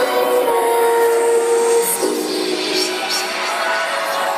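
Live electronic music heard from the audience at a concert. A held high note gives way about two seconds in to a lower sustained chord, with hardly any deep bass in the recording.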